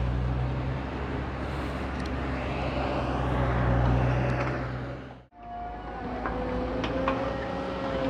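Diesel engine of heavy construction machinery running steadily, a loud low drone. About five seconds in it cuts off suddenly, giving way to a quieter machine whine that sinks slightly in pitch, with a few light clicks.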